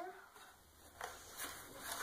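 Quiet handling noise from hands moving a hoverboard's loose plastic shell and its wiring, with a faint click about a second in.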